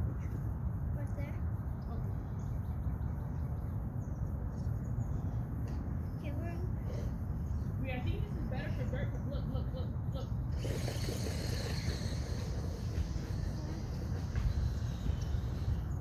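Outdoor ambience dominated by a steady low rumble of wind on the phone's microphone, with faint distant voices. About ten seconds in, a broader hiss comes in and stays.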